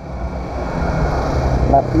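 Motorcycle engine running as the bike rides slowly through town traffic, a steady low rumble that grows louder over the two seconds.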